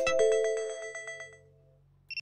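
Electronic melody of bell-like chiming notes, like a ringtone, dying away about a second and a half in, followed by near silence.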